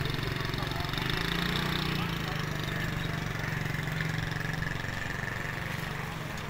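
A small motorcycle engine running with a steady low hum, weakening a little near the end, over faint background voices.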